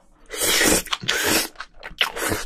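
Loud, close slurping as a mouthful of sauce-coated strands from spicy braised seafood is sucked in: two long slurps in quick succession.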